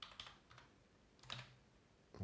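A few faint computer keyboard keystrokes: a quick cluster right at the start and another about a second and a quarter in, with near silence between.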